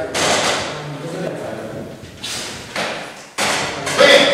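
Indistinct voices in a classroom, with rustling noise and a sudden thud a little over three seconds in.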